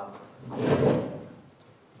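A chair scraping across the floor once, swelling and fading over about a second.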